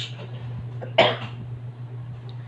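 A single short cough from a person, about a second in, over a steady low hum.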